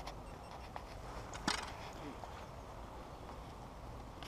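Handling sounds from a landing net and fly rod: a sharp click at the start, a small tick, and one louder knock about one and a half seconds in, over a low steady wind rumble.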